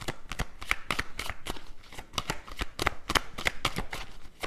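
A deck of tarot cards being shuffled by hand: a quick, irregular run of short clicks, several a second.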